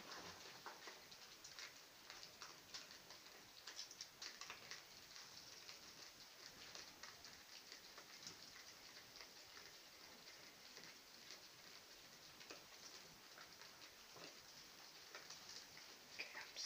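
Near silence with faint, irregular clicks and ticks scattered throughout.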